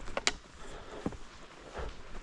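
Footsteps of a hiker walking a dirt forest trail, dull steps about every two-thirds of a second. A sharp click near the start is the loudest sound.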